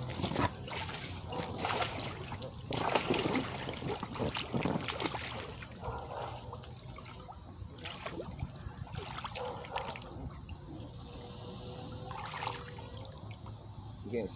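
Hot-tub water splashing and sloshing as a person moves about and settles in an inflatable hot tub, busiest in the first few seconds, then trickling in scattered splashes. A low steady hum runs underneath.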